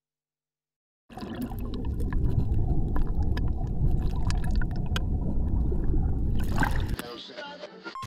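Rushing, churning and bubbling water, heard as if from underwater in a swimming pool, full of scattered clicks. It starts suddenly about a second in after dead silence, and drops away about a second before the end.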